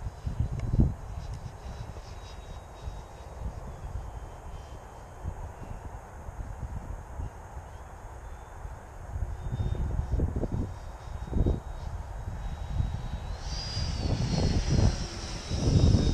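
Electric ducted-fan whine of an HSD Viper V2 RC jet in flight, faint at first, then rising in pitch and growing louder over the last two seconds or so as it comes closer. Wind buffets the microphone throughout.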